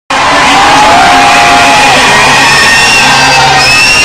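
Loud live music over a PA in a large hall, with crowd noise: long held notes that slide in pitch over a dense wash of sound, recorded very hot from among the audience.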